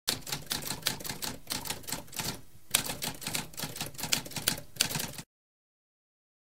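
Typewriter sound effect: rapid key strikes clattering in quick succession, with a brief pause about halfway before the typing resumes. It cuts off suddenly about five seconds in.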